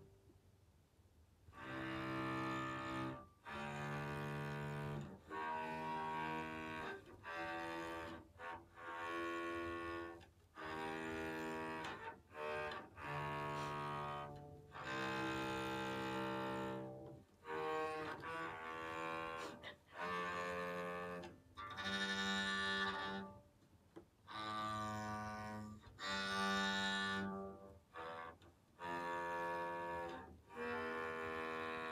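Electric cello bowed by a first-time player: slow, separate held notes about one to two seconds each, with short breaks between them and the pitch changing from note to note.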